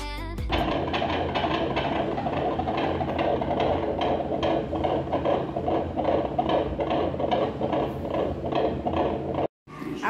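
Handheld fetal Doppler monitor playing the unborn baby's heartbeat: a fast, whooshing pulse that cuts off suddenly near the end.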